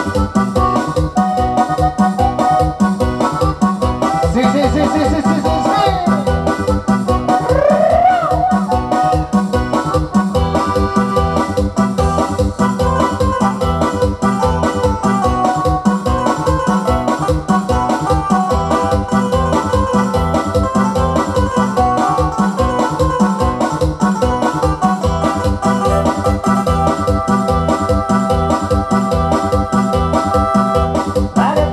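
Electronic arranger keyboard playing an instrumental passage of Latin dance music: sustained organ-like chords over a steady, fast programmed beat, with a few sliding notes in the first eight seconds.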